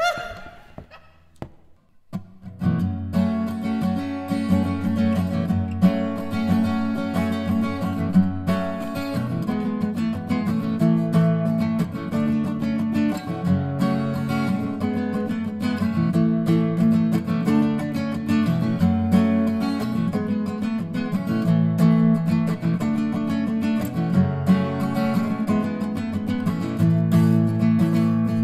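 A short laugh, then a brief near-quiet gap before a strummed acoustic guitar comes in about two and a half seconds in, playing a steady chord pattern as the instrumental intro of a song.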